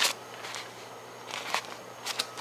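Crinkling and rustling of a stuffed Dyneema dry sack as fingers press and squeeze it, with a brief rustle about one and a half seconds in.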